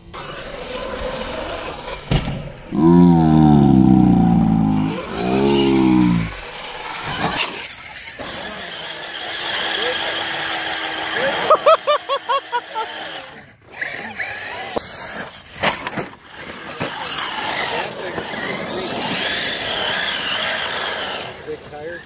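Electric RC cars driving on a dirt track, their motors whining as they rev up and down. The sound changes abruptly at a couple of cuts.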